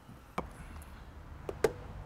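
A few short, sharp knocks on a hollow vinyl fence post as it is handled and plumbed with a level, the loudest about a second and a half in.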